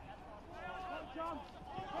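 Faint, distant voices calling and shouting across an open football ground, over a low steady outdoor hum.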